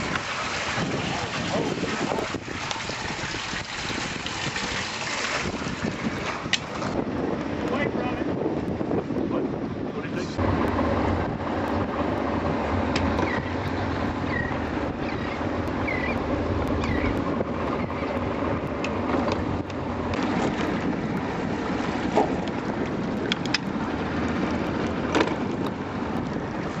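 Steady wind noise on the microphone, rising and falling as the camera moves about.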